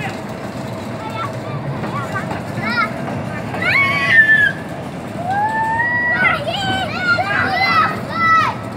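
Children's high voices shouting and calling out, in long rising and falling calls that come in two spells, about halfway through and near the end, over a steady background rumble.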